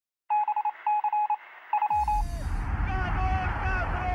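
Electronic beeps like telephone dialing tones, in three quick runs. Near the halfway point a deep bass sweep drops down into a low, steady rumble with warbling, voice-like sounds over it.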